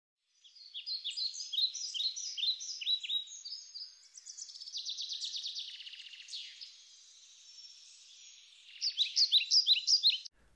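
Birdsong: a run of quick, high, falling chirps, then a buzzy trill, then a quieter spell before more chirps near the end.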